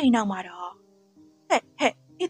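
A voice narrating a story in Burmese over soft background music with held low notes. There is a run of syllables at the start and two short ones near the end.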